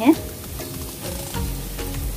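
Onion, garlic and spice masala sizzling gently in a nonstick kadhai on low heat, with a wooden spatula stirring and scraping it in the second half.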